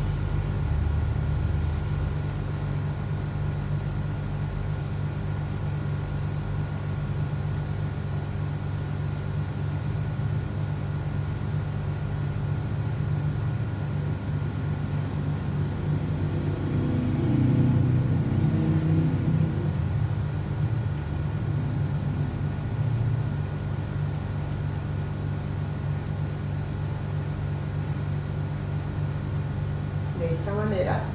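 A steady low hum, a little louder for a few seconds past the middle.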